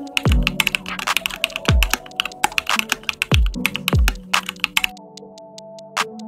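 Computer keyboard typing sound effect: a rapid run of key clicks as text is typed into a search bar. Under it runs background music with a deep bass thump every second or two. The clicks and music thin out about five seconds in.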